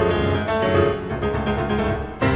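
Solo piano playing classical music, with notes and chords struck one after another every half second or so.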